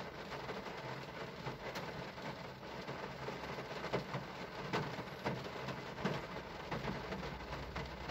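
Low, steady background hiss with scattered faint ticks.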